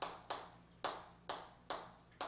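Chalk striking and scraping a chalkboard as characters are written: five sharp taps at uneven spacing, roughly every half second.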